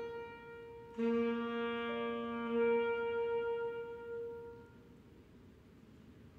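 Alto saxophone and grand piano sounding held notes together. A single note starts and fades, then about a second in a fuller sound enters with several pitches that holds, swells, and dies away near the five-second mark.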